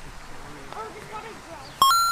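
A sudden short electronic beep near the end, starting with a click and stepping up from one steady tone to a higher one. Faint voices can be heard before it.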